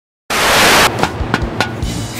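A short burst of TV static hiss lasting about half a second, then background music starts with a few sharp drum hits over a low bass.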